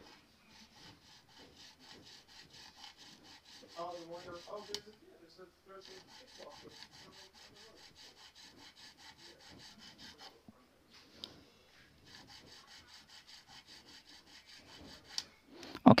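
Nut file rasping back and forth in a string slot of a bass guitar nut, in quick, even, fairly quiet strokes. It comes in two runs with a short pause between them. The slot is being filed deeper to lower the string at the nut, which still sits too high.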